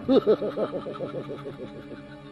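A man laughing: a rapid run of short "ha" pulses, about seven a second, that grows fainter over about two seconds.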